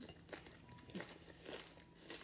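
Quiet mouth sounds of someone eating a nopalito tostada: a few soft chewing and lip clicks, barely above room tone.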